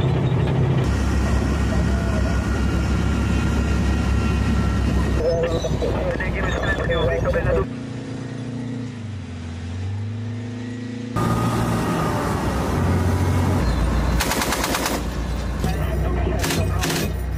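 Heavy tracked military vehicles rumbling and clanking: an armoured bulldozer, then a tank. Voices come in briefly around the middle, and a rapid burst of machine-gun fire comes near the end.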